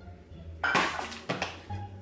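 A frying pan full of ice cubes clattering as it is set down on a smooth-top stove, with the ice knocking against the pan: a loud clatter less than a second in and a smaller one about half a second later. Background music plays throughout.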